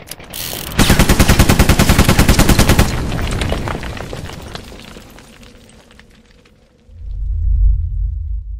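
Sound-effect burst of rapid machine-gun fire, about nine shots a second for about two seconds, dying away in a long ringing tail. A deep boom swells up near the end.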